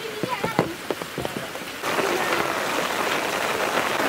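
Steady hiss of water, like rain or a running stream, starting abruptly about two seconds in. Before it, short voice sounds and a few sharp clicks.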